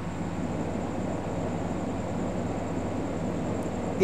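Steady background hum and hiss with a faint, thin high-pitched whine, unchanging throughout: room tone of the recording setup.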